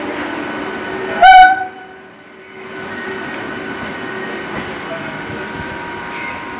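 Indian Railways EMU local train horn giving one short, very loud blast about a second in, over the steady hum of the electric train at the platform. After a brief dip, the train's hum and rumble carry on.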